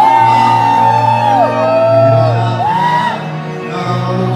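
Live pop music through a venue PA: an amplified male voice singing long held notes that bend up and down, over a backing track with a steady low bass.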